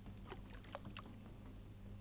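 Faint splashes and drips as a mosquito-larvae dipper is scooped through shallow marsh water, a few short splashes in the first second over a steady low hum.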